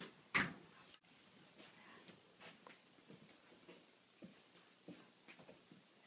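A door shutting with a single sharp thud about a third of a second in, followed by faint scattered footsteps and small taps on the floor.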